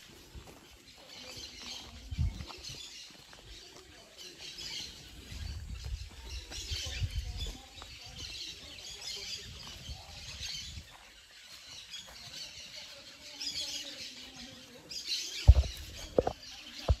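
Outdoor pasture ambience: birds chirping on and off, with a few low rumbles. A couple of sharp knocks near the end are the loudest sounds.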